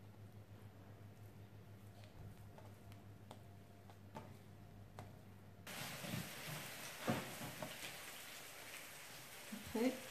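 Faint handling sounds of hands rolling soft dough on a countertop: a few soft taps and ticks over a low steady hum. About halfway a steady hiss sets in suddenly and stays under the handling.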